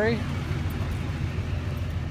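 Truck engine idling, a steady low rumble that does not change.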